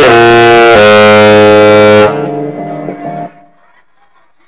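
Saxophone holding a long, low closing note that steps down in pitch just under a second in and stops about two seconds in. A quieter musical tail fades out by about three seconds.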